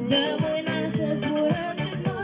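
A girl singing into a handheld microphone over recorded backing music with a steady beat.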